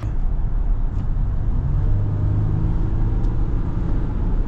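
Low, steady drone of a 2020 Ram 1500 EcoDiesel's 3.0-litre V6 turbodiesel heard from inside the cab as the truck accelerates at highway speed, with road and tyre noise underneath.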